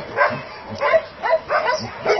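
Dogs barking and yipping in short, high calls, about three a second.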